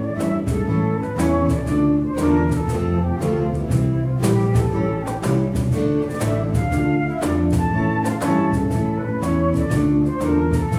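Live band music: a stepwise melody line over a moving bass line, with steady rhythmic strokes throughout.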